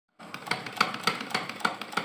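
Salora hand sewing machine turned at its handwheel, its mechanism clicking in a steady rhythm of about three to four clacks a second, with lighter ticks in between.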